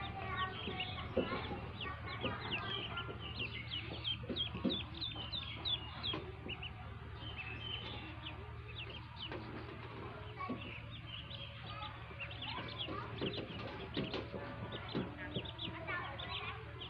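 A brood of newly hatched ducklings peeping, many short high chirps overlapping. The chirps are dense at first, thin out in the middle and pick up again near the end, over a steady low hum.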